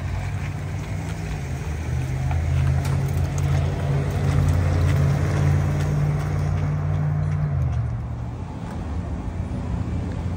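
Chevrolet Silverado pickup's engine running as the truck pulls away: a low, steady drone that grows louder, then drops off about eight seconds in.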